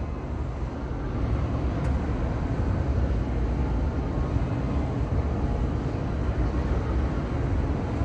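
Steady low rumble and hiss of city street traffic, with a faint tick about two seconds in.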